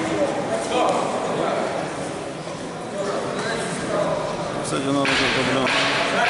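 Men's voices calling out and talking while two fighters grapple, with a louder rush of noise about five seconds in.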